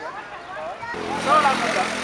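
A motor vehicle's engine running nearby, coming up about a second in and holding a steady hum under men's voices in the street.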